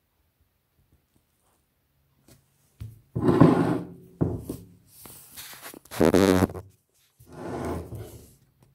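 A heavy stone being turned over and shifted on a wooden tabletop: four loud bursts of scraping and thumping, starting about three seconds in.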